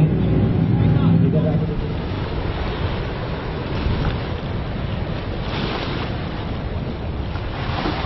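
Outboard engine of an RNLI inflatable lifeboat running steadily, which stops a little under two seconds in. After that, wind on the microphone and waves, with two brief surges of hiss, one around the middle and one near the end.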